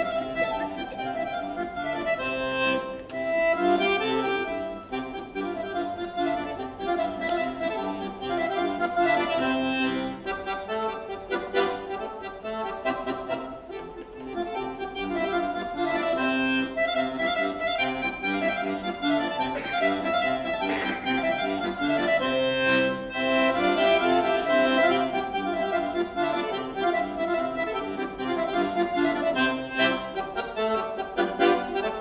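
Solo accordion playing a piece, several notes sounding together and changing continually, without a break.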